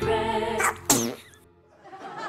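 A sung jingle with held musical notes ends about half a second in. About a second in comes one short, sharp cry whose pitch falls away, and then it goes quiet.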